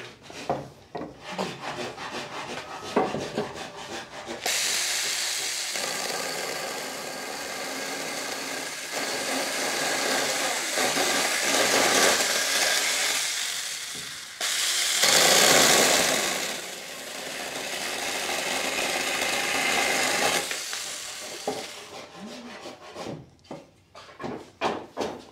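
A few knocks of handling, then from about four seconds in a cordless power saw cuts steadily through a wooden bed slat for some seventeen seconds, loudest a little past the middle, before stopping near the end.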